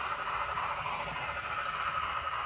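N scale sound-equipped steam locomotive model (Broadway Limited Paragon3 Light Pacific 4-6-2) running at speed: a steady hiss of its onboard steam sound from a tiny speaker, with the rumble of its wheels on the track.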